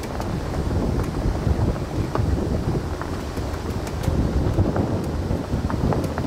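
Wind buffeting the microphone while riding along a gravel track, with a steady low rumble from the tyres on the gravel and a few faint small ticks.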